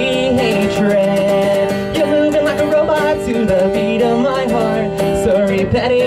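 Live acoustic guitar strummed under a singing voice that holds wavering sung notes.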